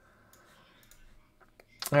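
A few faint clicks over a very quiet stretch, then a man's voice starts near the end.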